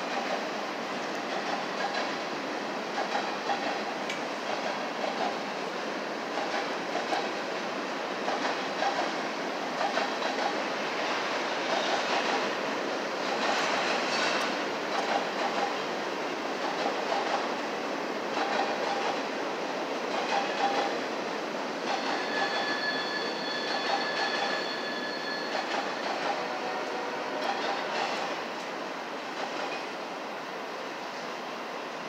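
Freight cars of a Union Pacific manifest train rolling past, wheels clacking rhythmically over the rail joints. There is a few seconds of high wheel squeal past the middle, and the sound drops near the end as the last cars go by.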